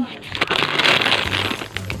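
Plastic snack packaging crinkling and rustling as packets are handled and shifted in a cardboard box, loudest about a second in.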